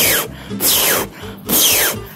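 Beatboxer's 'poh snare' made into a handheld microphone: three sharp snare strokes about three-quarters of a second apart, each carrying a short whistle that falls in pitch. He judges it still not quite right, maybe because his lips are not round enough.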